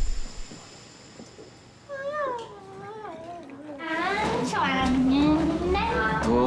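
A woman's wordless, sing-song voice that wavers up and down in pitch, starting about two seconds in and growing louder halfway through.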